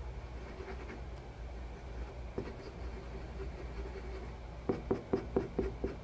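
Small paintbrush scratching and dabbing paint on paper, with a quick run of about seven taps near the end, over a low steady hum.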